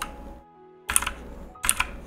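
A few sharp clicks of computer keyboard keys, one about a second in and a couple more near the end, over faint background music.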